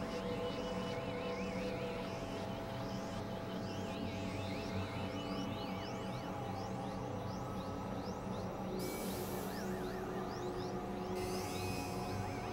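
Experimental electronic synthesizer music: steady low drones under a run of quick rising chirps in the high register, with a warbling high tone over the first half and two short bursts of hiss in the second half.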